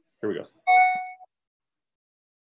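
A single electronic notification chime from a Zoom video call: one bright pitched ding that rings for about half a second and fades, the kind of alert heard as a participant is brought into the call.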